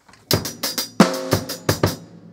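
Drum kit played in a practice exercise: snare drum strokes mixed with bass drum kicks in a quick run of about ten strikes, starting about a quarter second in.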